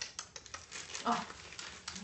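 A cocker spaniel crunching a raw carrot, a quick irregular run of sharp crunches.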